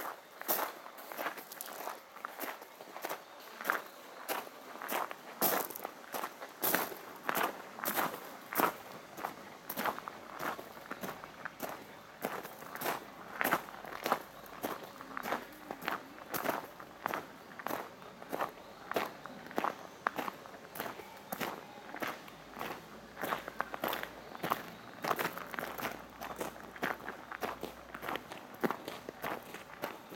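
Footsteps crunching steadily on a fine gravel path, about two steps a second, from someone walking at an even pace.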